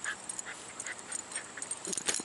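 A small dog grabbing and starting to shake a plush toy, making a few short, faint whimpering sounds. A louder sound comes just before the end as the shaking begins.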